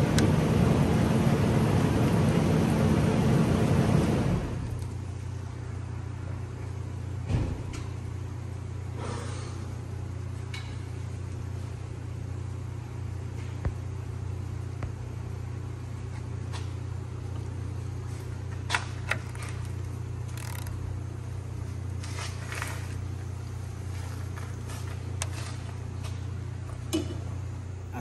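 A loud, even rushing noise fills the first four seconds and then stops abruptly. After that there is only the steady low hum of an auto repair shop's background, with a few faint clicks and knocks.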